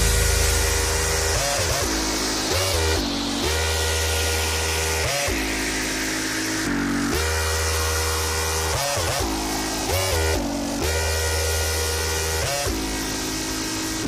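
Electronic dance music in a breakdown: sustained synth chords with the kick drum dropped out, and a few notes bending in pitch. A noise sweep falls in pitch over the first several seconds.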